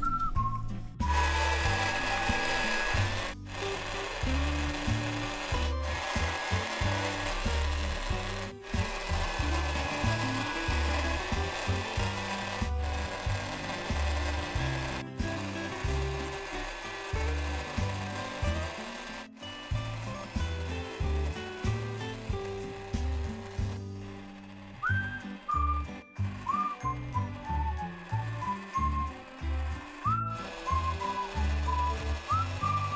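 Background music with a pulsing, stepping bass line and a few whistle-like glides, broken off at several edit cuts. Under it is rubbing and scraping from clay being shaped by hand and with a plastic tool and sponge on a small battery-powered toy pottery wheel.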